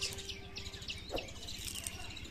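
Birds chirping faintly, a scatter of short high chirps over a quiet outdoor background, with a low steady tone that stops about a second in.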